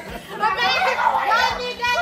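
Excited, high-pitched voices calling out over one another, growing loud about half a second in.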